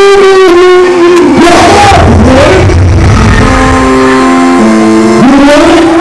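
Live hip-hop performance, very loud: a backing beat with a melodic line that steps between held notes, and a rapper's voice through the PA near the start and again near the end.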